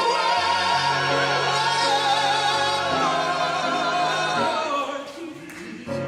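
Small mixed choir singing a held chord with vibrato. The chord dies away about five seconds in, and a new phrase starts right at the end.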